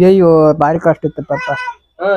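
A man speaking Kannada close to the microphone, opening with a long drawn-out vowel and then a run of short syllables.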